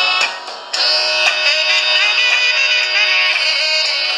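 A song with singing and instruments playing from an iPhone's small built-in speaker, thin and bass-less. It dips briefly under a second in, then carries on steadily.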